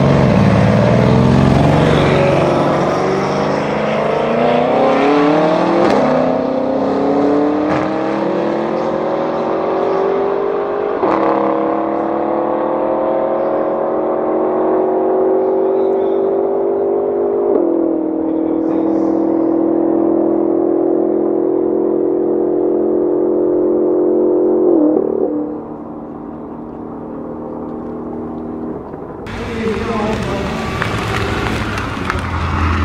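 A de-catted Mercedes-AMG C63 S and a BMW accelerating flat out from a standing start in a drag race. The twin-turbo V8 engine note climbs in pitch through each gear and drops sharply at four upshifts, then fades off near the end as the cars pull away.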